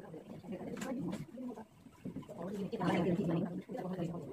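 Indistinct talking, a woman's voice speaking in short phrases, loudest about three seconds in.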